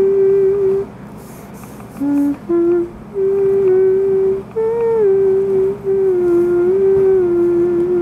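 A person humming a slow, wordless tune: long held notes that step and slide up and down, in several phrases with short pauses between them.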